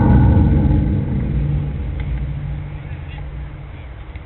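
An engine close by, starting suddenly and running at a steady pitch, loud at first and then slowly fading.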